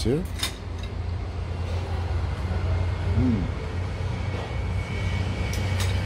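Steady low background rumble. A brief hum of a voice comes at the start and a faint murmur about three seconds in.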